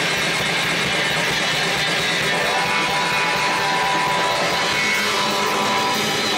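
A live rock band playing: drum kit, electric bass and keyboard synthesizer, loud and dense, with a held high tone through the middle.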